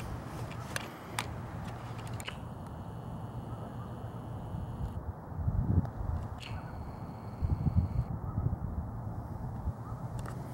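Canon PowerShot SX510 HS's lens zoom motor whirring faintly through the camera's own built-in microphone, once for a few seconds early on and again briefly after the middle, over outdoor ambience. Two brief low rumbles on the microphone, about halfway through and again shortly after, are the loudest sounds.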